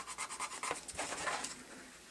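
Fingernail scratching the scratch-and-sniff patch on a picture-book page: a quick run of faint strokes that stops after about a second and a half.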